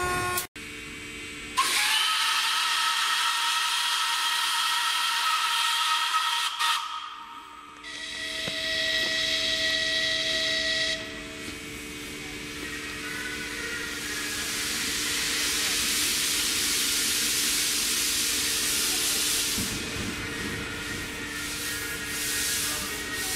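Kp4 narrow-gauge steam locomotive whistle blowing twice: a long chord of several tones, then a shorter blast at a different pitch. After that comes a steady hiss of escaping steam that swells and keeps going.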